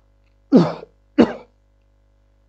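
A man coughs twice into his hand, clearing his throat: two short, sharp coughs about two-thirds of a second apart.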